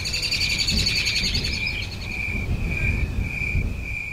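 Night-time nature ambience: a high chirp repeating about twice a second, with a rapid buzzing, insect-like trill over it for the first two seconds and an uneven low rumble underneath.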